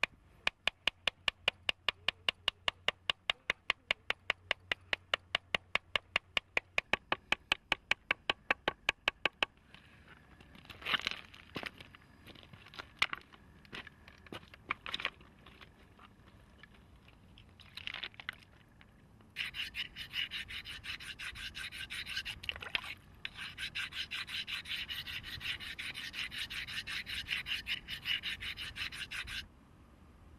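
Stone worked against stone in rapid, even strokes, about six a second, for the first nine seconds or so, while a stone axe is shaped. Then come a few scattered knocks of stones. From about two-thirds of the way in there is a steady gritty rasp of a stone blade being ground on a larger stone, broken once briefly, and it stops shortly before the end.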